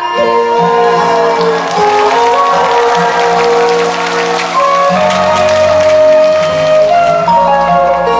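Instrumental interlude of a Korean trot song played from a backing track, with no singing. Audience applause rises over it during the first few seconds.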